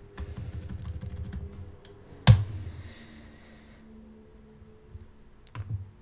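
Computer keyboard keys and clicks being pressed, a quick run of small clicks followed by one loud sharp click a little over two seconds in, then a few faint clicks near the end.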